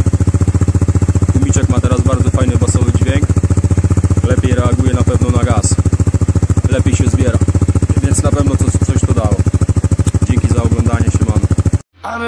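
Fourcraft 250 ATV engine idling steadily through its muffler with the restrictor screen removed, a fast even exhaust pulse. It cuts off suddenly near the end.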